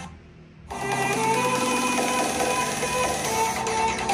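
Music playing from a 2018 MacBook Air's built-in speakers during a speaker test. It dips quiet for a moment at the start, then the music comes back in and runs steadily.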